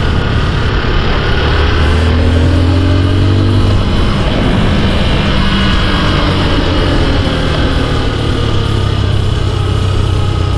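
Motorcycle engine running over steady wind rush on the microphone while riding downhill through tight bends. About a second and a half in, the engine note climbs for a couple of seconds, then eases back.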